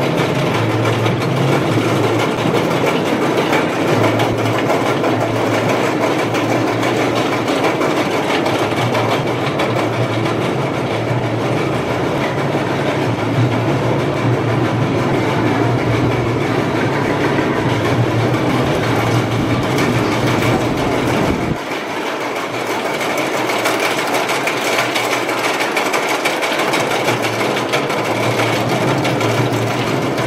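GCI wooden roller coaster train running over its track: a loud, continuous rumble and clatter of the wheels. About 21 seconds in the low rumble drops away suddenly, leaving a thinner clatter.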